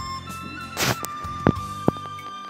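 Carom billiard balls clicking against each other as they come together after a draw shot: a few sharp, ringing clicks, the loudest two about half a second apart in the second half, after a brief rush of noise. Background music with a flute runs underneath.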